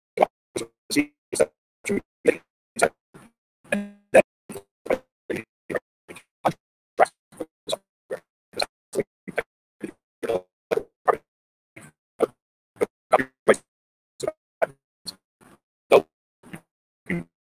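Video-call audio breaking up into short choppy blips, about two or three a second, with dead silence between them: the remote speaker's voice is chopped into fragments by a failing connection.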